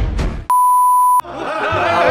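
A censor bleep: a single steady, high, pure beep lasting about two-thirds of a second, with all other audio muted under it. Music and voices run before it and come back after it.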